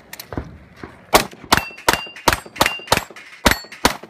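Rapid pistol fire from a Tim Graves custom .38 Super compensated Open pistol: two shots, a pause of about a second, then eight more about a third of a second apart. Steel plate targets ring after several of the hits.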